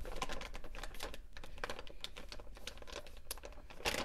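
Baking-soda bag being handled and folded closed, crinkling in a quick run of small irregular crackles.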